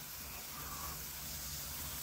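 Handheld gun-shaped spark fountain firework burning, giving a faint, steady hiss of spraying sparks.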